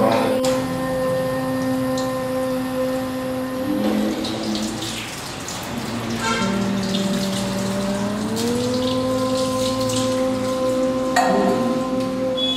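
Water poured and splashing over a stone Shiva lingam during abhishekam, under a steady held tone that drops lower about six seconds in and slides back up about two seconds later.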